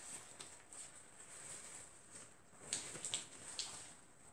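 Faint rustling of a small wrapped package being opened by hand, with a few light clicks in the second half.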